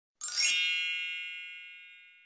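A bright chime sound effect: a quick upward run of bell-like tones a fraction of a second in, settling into one ringing chord that fades away over about two seconds.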